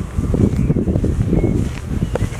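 Wind buffeting the microphone of a handheld camera, a rumbling low noise that keeps flickering in strength.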